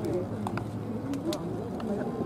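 Background murmur of several voices at once, with a couple of sharp clicks.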